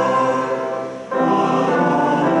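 Congregation singing a hymn with organ accompaniment in sustained chords. The sound thins and dips briefly about a second in, a break between phrases, then resumes at full level.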